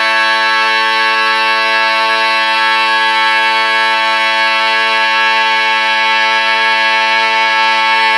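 A cappella barbershop quartet chord sung by one man multitracked on all four parts, held steady and unbroken as the final chord of the tag.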